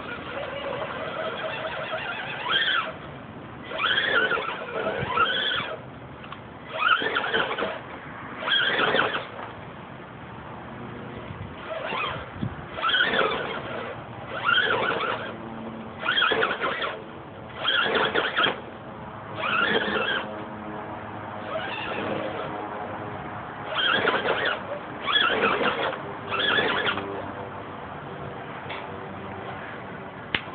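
Axial SCX10 RC rock crawler's electric motor and drivetrain whining under load in short throttle bursts every second or two, each squeal rising and then falling in pitch as the truck strains up a steep wooden ramp.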